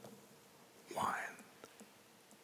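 A man's brief, soft whispered sound about a second in, with quiet room tone and a few faint clicks around it.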